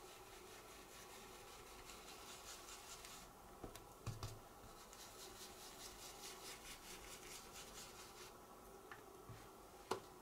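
Faint, quick repeated brushing of a stencil brush swirled over card stock, working ink around the edge of a paper mask. A couple of light knocks about four seconds in.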